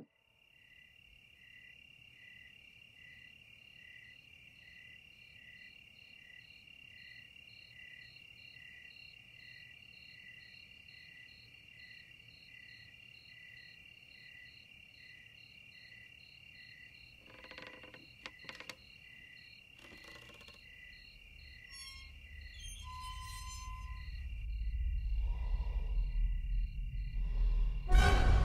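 Crickets chirping in a steady, regular rhythm, about three chirps every two seconds, in a quiet night-time ambience. A low rumble swells over the last few seconds.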